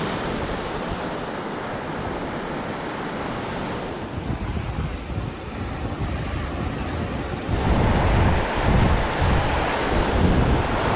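Surf washing onto a sandy beach, with wind buffeting the microphone. The sound changes abruptly about four seconds in and again near eight seconds, where the wind rumble grows stronger and gustier.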